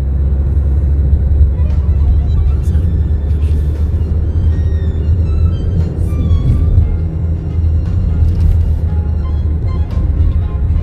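Car interior noise while driving: a steady low rumble of engine and tyres heard inside the cabin, with faint music of short rising and falling notes over it.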